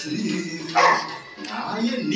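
A dog barks once, about a second in, over film music and dialogue.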